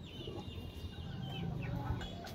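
Chickens clucking, with thin high-pitched calls over them.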